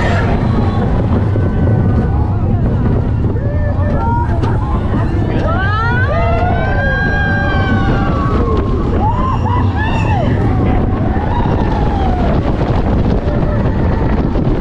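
Slinky Dog Dash roller coaster heard from a moving car: a steady rumble of the train and wind on the microphone. Riders give long rising-and-falling whoops about six seconds in and again near ten seconds.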